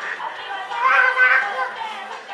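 A young girl's high-pitched voice, calling out or singing, swelling loudest about a second in.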